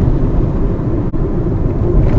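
Steady low rumble of a car driving, engine and tyre noise heard from inside the cabin, with a brief dropout about halfway.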